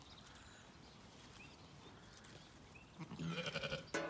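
Faint outdoor background for about three seconds, then a Zwartbles lamb bleats once near the end.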